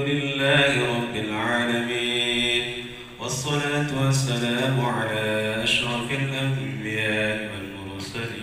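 A man chanting a prayer into a microphone, holding long melodic notes in phrases of a few seconds, with a short pause for breath about three seconds in.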